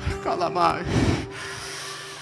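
A man's raspy, breathy vocal exclamation through a microphone, rising in pitch, about half a second in. A soft held keyboard note sustains underneath.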